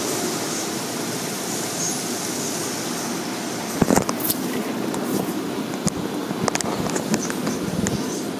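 Steady rush of car-wash water spraying over a car, heard from inside the cabin. A cluster of sharp knocks comes about four seconds in, followed by scattered clicks.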